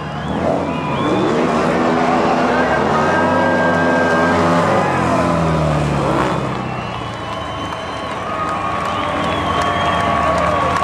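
Several speedway sidecar outfits' engines racing on a dirt oval, their pitch rising and falling repeatedly as they accelerate and back off.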